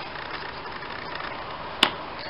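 Steady low hiss of room tone, with one sharp click near the end as a trading card is laid down on a wooden table.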